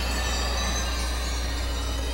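Sustained synthesizer background music: a steady, even bed of held tones with no beat, over a constant low hum.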